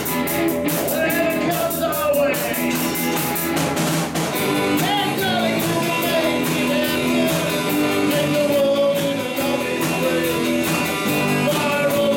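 Live band playing a rock and roll song: guitars and a drum kit with a steady beat, and a man singing lead.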